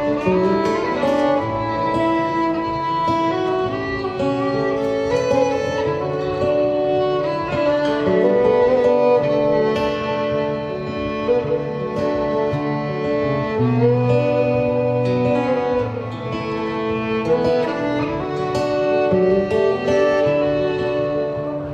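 Solo violin played with the bow, a melody of held and moving notes, over sustained lower accompanying notes.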